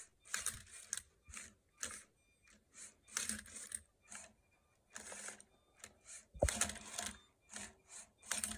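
LEGO Mindstorms Robot Inventor robot solving a Rubik's cube: a string of short, irregular scraping clicks as its motors turn the cube and twist its layers, with one brief falling whine about six seconds in. Faint and choppy, heard through a video call.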